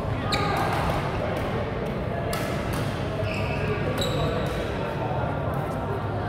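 Badminton rackets striking a shuttlecock in a rally: sharp hits spaced a second or two apart, ringing in a large reverberant hall over steady background voices.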